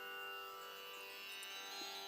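Soft tanpura drone: a steady bed of sustained, ringing tones with no voice over it.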